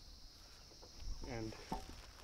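Crickets chirring in a steady, high, even drone. A low rumble sets in on the microphone about a second in.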